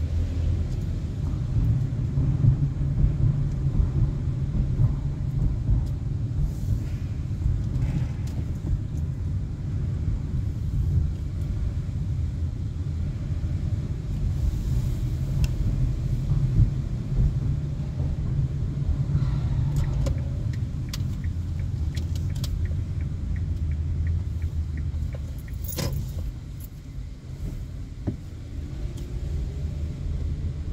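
Low, steady rumble of road and engine noise inside a slowly moving car's cabin, with scattered light clicks and rattles and one sharper click near the end.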